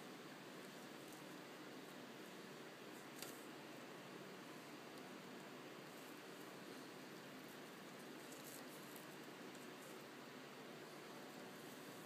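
Near silence: faint steady room hiss, with a single soft tap about three seconds in.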